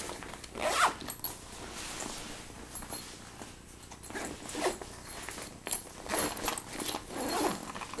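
Zipper on a fabric backpack being pulled open in several short strokes, with the bag's fabric rustling as it is handled.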